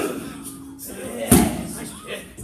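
Strikes landing on a trainer's Muay Thai pads: a smack right at the start and a louder, sharper one about a second and a third in.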